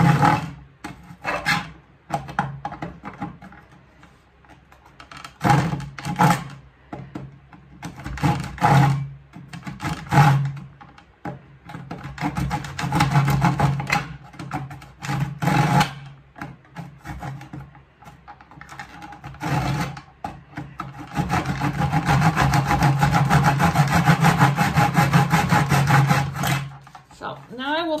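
Handsaw cutting through a thin wooden strip in a plastic miter box, with back-and-forth rasping strokes in short bursts at first, then a long run of fast, even strokes that stops shortly before the end.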